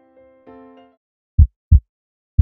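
Soft keyboard chords fade out, then a heartbeat sound effect comes in near the end: one lub-dub pair of low thumps.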